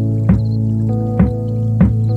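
Background music: held low electronic notes with three short plucked notes over them.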